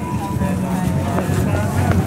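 A steady low rumble, like city traffic, under faint crowd voices, with a ringing tone fading out in the first second.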